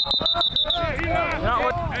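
A whistle blown in one high, fluttering blast that stops just under a second in, followed by people shouting.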